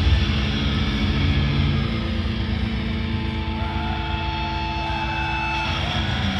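Distorted electric guitars and bass of a live metal band ringing out a held, droning chord through the stage amplifiers, easing off slightly. A thin, steady feedback whine sounds over it in the middle.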